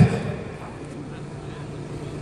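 A pause in a man's amplified speech: his last word fades over about half a second, then only faint, steady outdoor background noise with a low hum remains.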